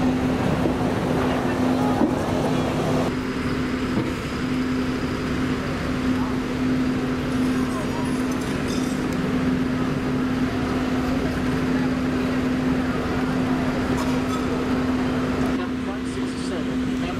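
Open-top double-decker sightseeing bus moving through city traffic, heard from its open upper deck: a steady low hum with road and traffic noise. The sound shifts abruptly about three seconds in.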